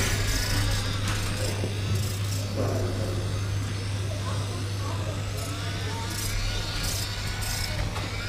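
Indistinct background chatter of people talking over a steady low hum.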